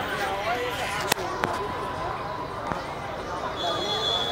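Background chatter of several people's voices, with two sharp knocks a little after a second in and a short, high, steady tone near the end.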